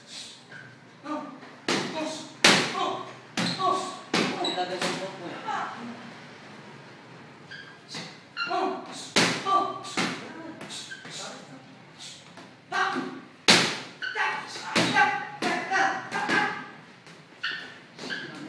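Boxing gloves landing in sparring: flurries of sharp punch thuds, with short pauses between exchanges.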